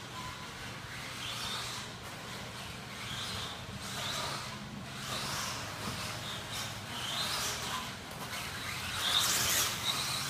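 Team Associated RC10 Worlds car, an electric two-wheel-drive 1/10 buggy, running laps on a dirt track. Its motor whine and tyre hiss swell and fade several times as it passes and brakes.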